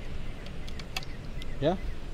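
A few light metallic clicks from the hammer of a single-barrel 12-gauge shotgun being worked by thumb, the sharpest about a second in.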